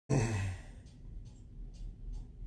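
A man's sigh close to the microphone just as the recording starts, fading within half a second, followed by a few faint short hissy breaths.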